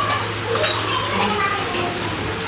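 Several people chatting at once, a child's voice among them, over a steady low hum.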